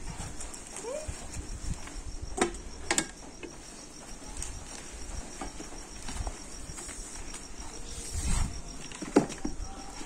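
Crickets chirping steadily in a high, evenly pulsing trill, with a few sharp snaps and rustles of leafy stems being handled.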